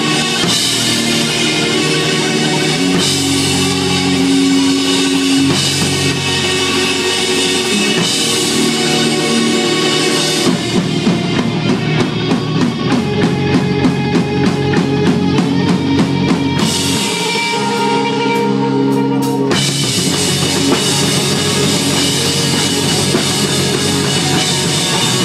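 Punk rock band playing loud live: electric guitars and a drum kit. About ten seconds in the drums settle into a fast, even beat of about four strokes a second, the top end thins out for a couple of seconds, and the full band comes back in near the end.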